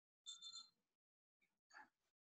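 Near silence, with a faint short tone about a third of a second in.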